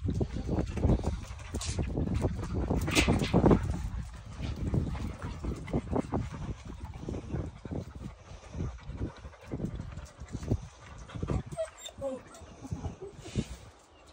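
English Pointer puppies eating dry kibble from a tray: a run of irregular crunching and clicking chews, louder in the first few seconds, with a short whimper about eleven seconds in.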